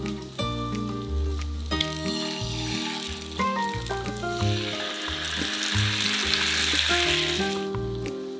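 Two eggs frying in a hot pan, sizzling, with the sizzle swelling loudly about halfway through as a soy-sauce mixture is poured onto them, then cutting off shortly before the end. Background music with notes and a bass line plays throughout.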